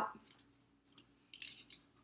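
Faint rustling and a few light clicks of cardstock being handled as a cut paper butterfly is worked loose from a thin metal cutting die, about a second in and again a little later.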